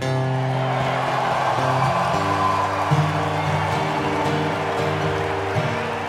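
Live music led by a guitar on stage: sustained chords that change every second or two, over a steady low note.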